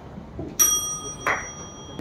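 A bell is struck once, a little over half a second in, and its clear, high ding rings on steadily. A short, louder noise cuts in briefly partway through the ring.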